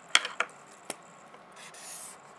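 A felt-tip marker on paper: a few light clicks or taps in the first second, then the tip scraping across the paper near the end as a line is drawn.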